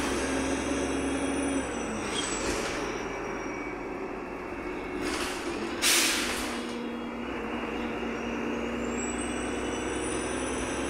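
Interior sound of a Wright Pulsar 2 single-deck bus on a VDL SB200 chassis running in service: a steady engine and drivetrain drone with short hisses of air, the loudest about six seconds in. A thin high whine rises near the end.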